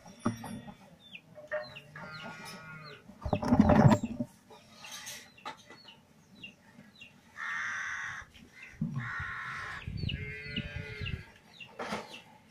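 Chickens calling, with several drawn-out clucking calls through the middle and second half, over repeated short high chirps from small birds. A brief loud rumbling knock or handling noise comes about three and a half seconds in.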